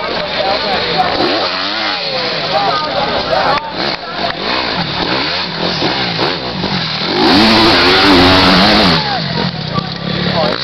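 Enduro motorcycle engines revving up and down, more than one at a time. About seven seconds in, one bike accelerates hard close by for about two seconds, the loudest part.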